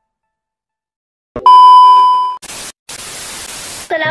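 Silence, then a loud, steady electronic beep lasting about a second, followed by two bursts of white-noise hiss like television static.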